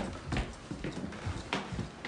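Footsteps on a hardwood floor: several separate knocking steps, unevenly spaced.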